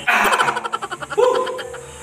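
A man's voice straining and laughing through clenched teeth: a quick rattling burst of short pulses, then a short held hum about a second in.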